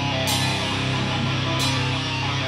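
Melodic metalcore band playing live: a dense wall of heavy guitars and bass over a drum kit, with two cymbal crashes a little over a second apart.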